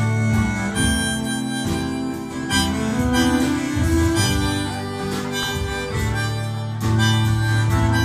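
Live band playing an instrumental passage on acoustic guitar, violin and drums, with sustained melody notes held over the guitar.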